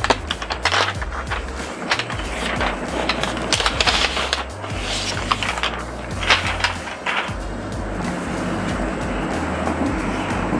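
Crinkling, rustling and scraping of a new laptop's translucent protective wrap as it is unwrapped on a wooden desk, with scattered light clicks. Background music with a low bass line plays underneath.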